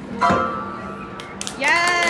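Upright piano being played, a chord struck shortly in and ringing on with held notes. A person's voice comes over it near the end.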